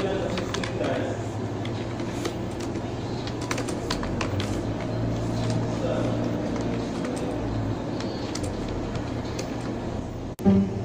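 Typing on a computer keyboard: irregular runs of key clicks over a steady low hum, with faint voices in the background.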